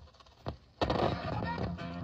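A short quiet stretch with a soft click, then, about a second in, music starts playing from a vinyl record on a turntable.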